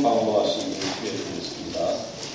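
A person's voice, indistinct, in short voiced stretches: one at the start that fades after about half a second, another brief one near the end.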